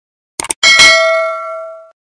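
Subscribe-animation sound effect: two quick mouse clicks, then a bright bell ding that rings out and fades away over about a second.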